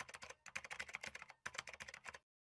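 Computer keyboard typing clicks, rapid and in three short runs with brief pauses: a typing sound effect laid under on-screen text as it types itself in.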